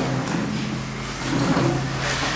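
A low, steady sustained chord, like a soft keyboard pad, that shifts slightly partway through, with faint voice sounds near the end.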